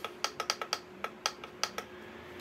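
About ten sharp clicks in quick succession from the control button on the back of an AC Infinity S6 clip-on oscillating fan's motor housing, pressed repeatedly to switch the fan back on and step it through its speed settings.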